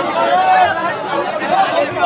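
A crowd of people shouting and talking over one another, many voices at once.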